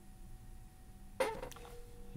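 Mostly quiet, with a faint steady tone starting about one and a half seconds in from the Apple Watch Series 8's speaker: the ringback of an outgoing call that has just been dialled.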